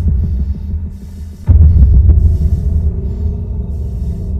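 Suspense film score: a loud, deep throbbing drone that surges up again about a second and a half in.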